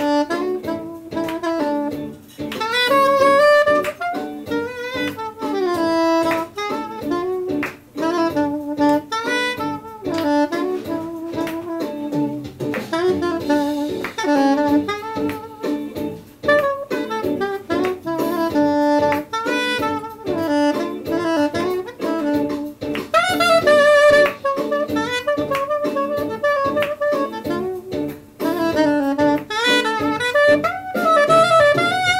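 Soprano saxophone playing a slow melody solo, in phrases with brief pauses between them.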